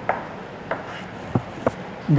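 Chalk tapping on a chalkboard as figures are written and underlined: four short, sharp taps, spaced unevenly.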